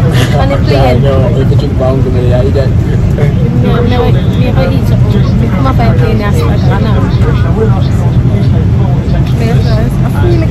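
Steady low drone of a jet airliner's cabin, with talking voices over it throughout.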